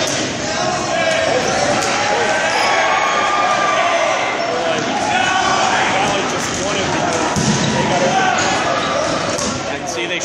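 Dodgeball game in a large gym: many players shouting calls to one another in a steady din, with dodgeballs bouncing and slapping on the hard floor, all echoing in the hall.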